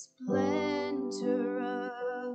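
Worship song: a woman singing over sustained keyboard chords. The voice and chord come in about a quarter second in and are held through the rest.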